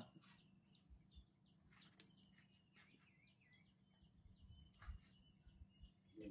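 Near silence with small birds chirping faintly, short high notes repeating about twice a second, and a single faint click about two seconds in.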